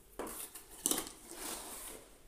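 Cardboard shipping box being handled: its flaps and the inner box scraping and rustling against the carton, with two sharp scrapes, the louder one about a second in.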